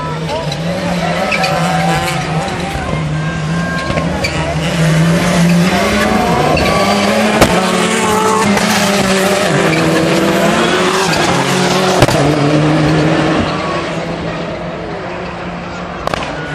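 Rallycross Supercars' turbocharged four-cylinder engines revving and lifting through a corner, with tyre noise on the track. It grows loudest midway as a car passes close, and two sharp cracks stand out, about seven and a half seconds in and again near twelve seconds.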